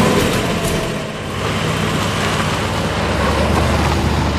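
A car's engine running, with a low rumble that grows stronger near the end.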